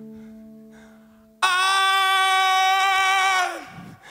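A held chord from the band fades away, then a male singer comes in loud on one long sung note, unaccompanied, from about a second and a half in; the note sags in pitch as it ends, near the end.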